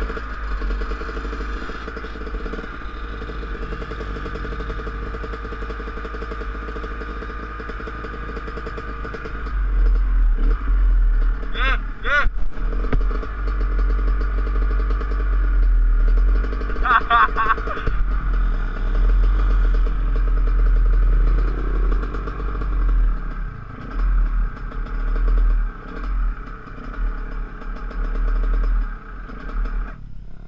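Dirt bike engine running at idle with a steady hum, and low wind rumble on the microphone that grows louder about ten seconds in. Two short high-pitched wavering calls come at about 12 and 17 seconds.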